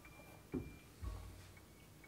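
Faint background music of sparse held tones, with a soft knock about half a second in and a duller thump a moment later as a Glencairn whiskey glass is set down on the bar mat.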